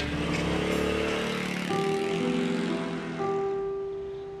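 A motor scooter pulling away and fading out over the first two seconds, under background music that settles into long held notes.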